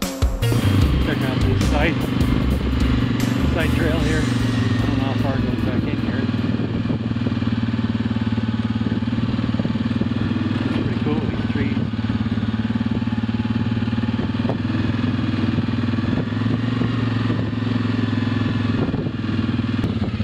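ATV engine running at a steady, even throttle as the quad is ridden along a dirt trail.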